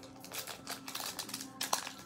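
Foil wrapper of a baseball card pack crinkling and tearing as it is pulled open by hand: a quick, irregular run of small crackles and clicks.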